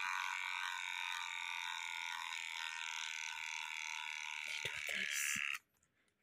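Electric hair clippers buzzing steadily as they trim a baby monkey's fur, then switched off about five and a half seconds in, with a few light clicks just before they stop.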